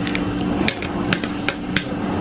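Sharp plastic clicks and taps, five or six over about a second, as baby bottles and their caps are handled and put together.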